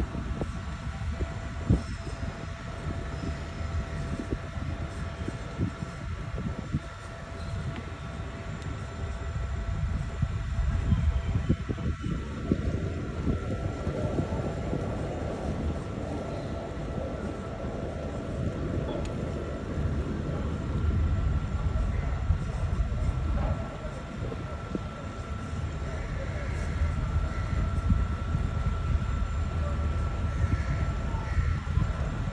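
Motor of a small wooden abra boat running steadily with a low rumble, heard from aboard as it cruises along a canal.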